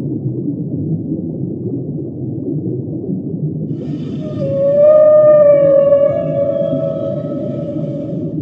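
Humpback whale call: one long, slightly wavering tone with overtones, starting about halfway through and loudest just after it begins, over a steady deep rumble.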